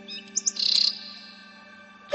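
A small bird chirping high and briefly: two quick notes and then a short trill about half a second in.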